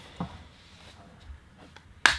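Faint plastic handling of an HP Sprocket pocket photo printer as its top cover is slid back on after loading paper: a short knock about a quarter second in, then a few light clicks.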